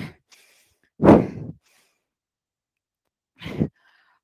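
A woman's heavy sighing exhale about a second in, then a shorter, fainter breath near the end.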